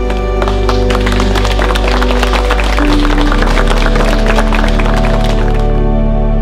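Wedding guests applauding over slow background music of sustained chords. The clapping starts about half a second in and stops shortly before the end, while the music changes chord about halfway through.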